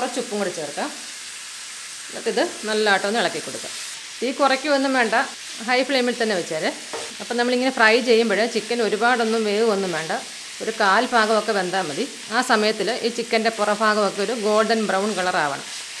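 Chicken pieces frying in oil in a pan over high heat, a steady sizzle that is brightest in the first few seconds, while they are stirred with a wooden spatula. A woman talks over it almost the whole time and is the loudest sound.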